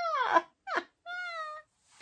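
A woman's high-pitched voice: a falling squeal as her laughter tails off, then a short cry and a held whimper that sags slightly in pitch.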